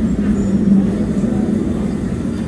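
London Underground train pulling out of the platform: a loud, steady low hum over rumble.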